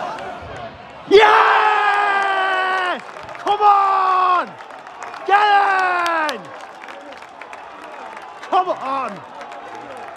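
A man yelling in celebration of a goal: three long, drawn-out shouts, each dropping in pitch as it ends, then a shorter shout near the end.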